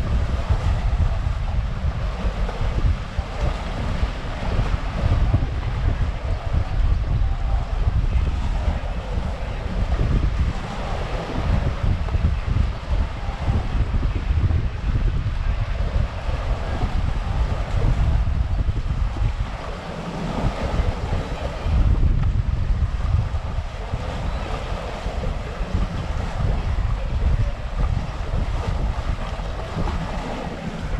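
Wind buffeting the microphone in uneven gusts, with waves washing against the shore.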